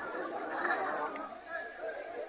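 A large crowd chattering, many voices overlapping at once.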